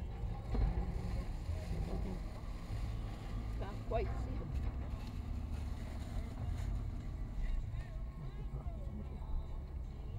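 Steady low rumble heard inside a stopped vehicle's cabin, with a faint, brief voice about four seconds in.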